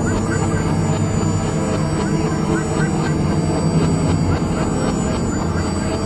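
Dense experimental noise-music mix of several tracks playing at once, built on a steady low drone. Short rising chirps recur higher up, with voices buried in the mix.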